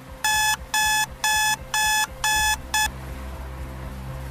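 Electronic alarm beeping: six quick beeps about two a second, the last one cut short, a wake-up alarm going off.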